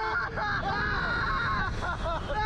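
Two riders, a young man and a teenage boy, screaming in long, held cries as the Slingshot reverse-bungee ride launches them upward, with a steady low rumble underneath.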